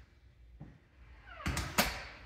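Wooden interior door being pushed open: a short rising hinge creak, then two loud knocks about a third of a second apart.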